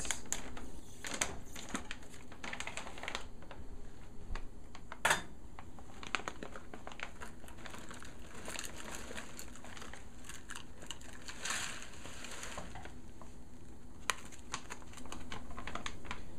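Dry pasta mix tipped from a crinkling foil pouch into a stainless steel pot of boiling water. Many small clicks and rattles of the pasta, with a louder clatter about five seconds in.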